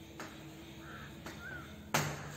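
Chalk tapping on a blackboard while writing: three sharp clicks, the loudest near the end. In between, a faint crow caws twice, about a second in and again half a second later.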